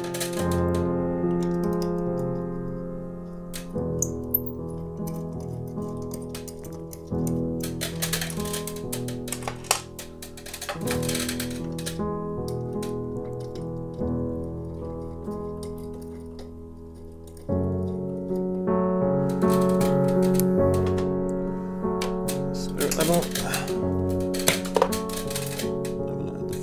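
Background keyboard music with held chords that change every few seconds. Scattered clicks and rattles of screws going into a projector's ceiling bracket with a hand screwdriver sound beneath it, thickest near the end.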